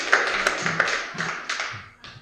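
Scattered hand clapping from a small audience after a song, dying away near the end.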